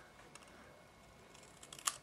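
Scissors cutting through a small piece of cardstock: a few faint snips, with a sharper click near the end as the cut finishes.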